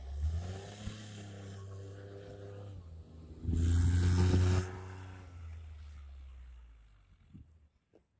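Kawasaki Mule Pro FXT side-by-side's three-cylinder engine pulling away through deep snow on a timed acceleration run, louder for about a second just past the middle, then fading into the distance until it is gone near the end.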